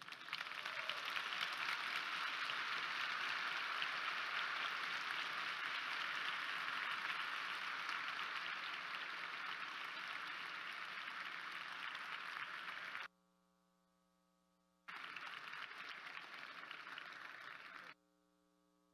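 Audience applauding steadily, cut off abruptly about thirteen seconds in. After a brief near-silent gap with only a faint steady hum, the applause resumes for the last few seconds and stops suddenly.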